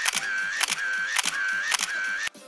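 Camera shutter sound effect clicking in a rapid, evenly repeating burst, about two shots a second. Each shot gives a sharp click followed by a short high tone.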